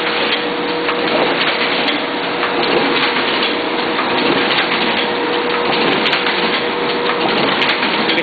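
Duplo System 4000 collator and bookletmaker line running: a dense, steady mechanical clatter of paper feeding, rollers and conveyor, with a steady whine that fades out near the end.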